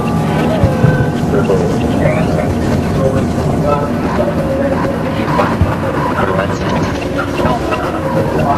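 A song playing: a dense, loud mix with a voice singing over it.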